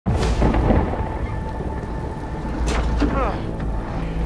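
Heavy rain falling over a deep, steady low rumble, with two sharp knocks a little before the end.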